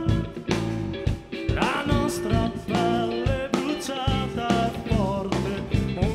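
Live rock band playing: electric guitar over bass and drums with a steady beat.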